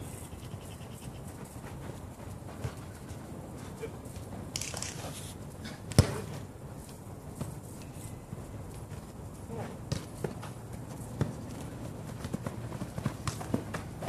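A football being kicked during play on artificial turf: one sharp kick about six seconds in and several fainter knocks of kicks and footfalls, over a steady outdoor background.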